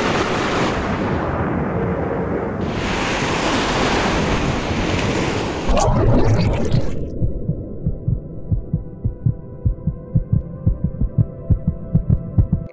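Sound-design effects: a loud rushing, water-like whoosh for about the first six seconds. After that come rapid low thumps like a heartbeat, several a second, over a faint steady drone.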